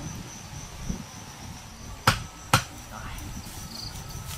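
Two sharp chops of a knife blade into a green stalk, about half a second apart, over a steady high insect trill.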